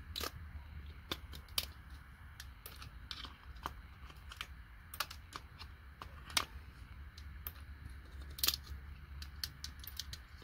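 Irregular sharp clicks and snaps of metal pliers gripping a small circuit board and twisting IC chips and components off it, a few snaps louder than the rest, over a low steady rumble.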